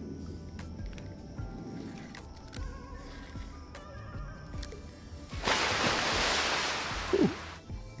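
Faint background music, and about five and a half seconds in a loud two-second rush of splashing noise as a large bass jumps out of the water.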